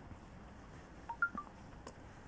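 Three quick beeps of different pitch, like a phone's key or notification tones, about a second in, followed by a single click near the end.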